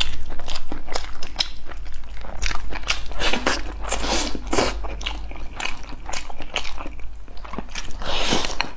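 Close-miked eating: chopsticks clicking against a ceramic bowl as rice and braised pork are shovelled into the mouth, with chewing throughout and a busier run of wet mouthfuls about halfway through.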